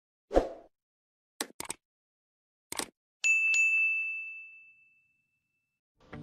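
Animated-logo intro sound effects: a low thud, a few quick sharp clicks, then a bright ding struck twice in quick succession that rings out and fades over about a second and a half.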